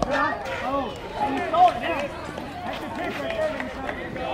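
Several voices of spectators and players calling out and talking over one another, with one louder call about a second and a half in.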